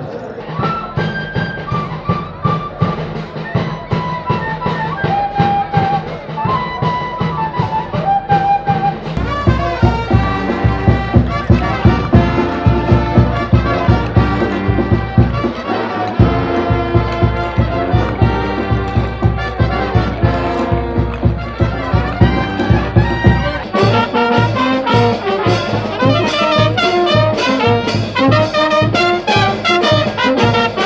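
Brass band playing a dance tune over a steady beat. The sound changes abruptly about nine seconds in and again near the end.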